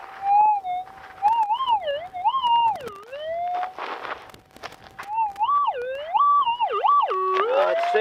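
Gold-prospecting metal detector sounding through its speaker: a steady threshold tone that warbles up and down in pitch in repeated swoops as the coil is swept over the dug dirt, responding to a shallow target dug out of the hole. A few sharp clicks and a short scraping rustle come about four seconds in.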